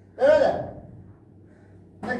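A person's short voiced gasp or exclamation, once, about a quarter of a second in and fading within about half a second.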